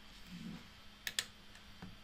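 Two sharp clicks in quick succession about a second in, then a fainter click near the end, over quiet room tone.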